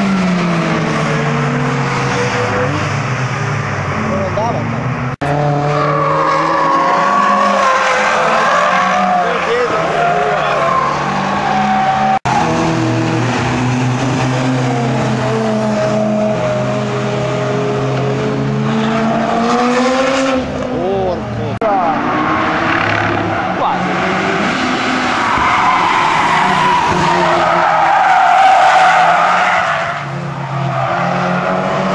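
Cars lapping a race circuit, their engines revving up and down in pitch through the corners with some tyre squeal. The sound breaks off abruptly twice, about five and twelve seconds in, as the footage cuts between cars.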